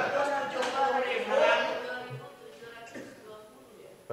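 A man laughing aloud, with other voices in a large room, loud for about two seconds and then trailing off.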